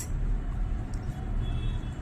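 A ballpoint pen writing on notebook paper, faintly, over a steady low background rumble.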